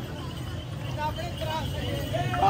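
Street noise: faint, scattered voices of people walking along over a steady low rumble of traffic.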